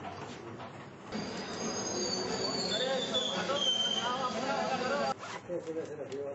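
Several overlapping voices talking at once, with thin high whistling tones gliding downward above them. The sound cuts in about a second in and cuts off sharply about a second before the end.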